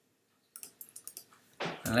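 Computer keyboard keystrokes: a quick run of about ten key clicks starting about half a second in, as a short command is typed.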